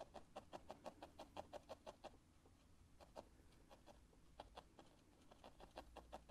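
Single felting needle stabbing quickly and repeatedly into wool fibres on a felting pad: faint sharp ticks about six a second, thinning to a few strokes in the middle and speeding up again near the end. Light, shallow strokes that only compact the fibres.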